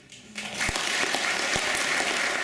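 Audience applause breaking out about half a second in and quickly swelling to a steady, full clapping, as the last held note of the piece fades away.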